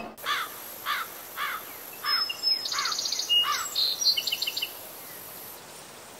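Wild birds calling: one bird repeats a short, arching call about twice a second, while another adds higher chirps and a brief trill in the middle. The calls die away after about four and a half seconds, leaving faint outdoor ambience.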